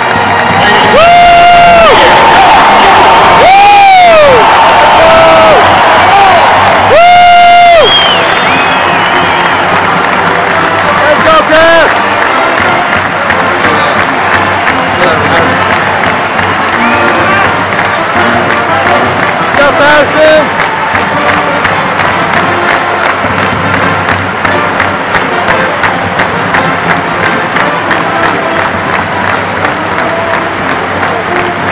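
Large basketball arena crowd cheering and clapping, with music playing. Three loud pitched tones rise and fall in the first eight seconds, then the crowd din carries on with clapping.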